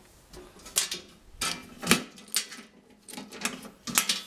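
A few separate clicks and knocks from hands handling a metal distribution board enclosure, its door being shut. The loudest knock comes about two seconds in and another near the end.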